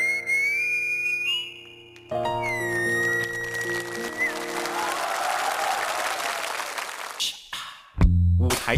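Musical saw bowed with a violin bow: a single high, whistle-like singing tone that glides up in pitch, breaks off just before two seconds in, then returns gliding down and holds over steady backing chords. Applause follows in the second half.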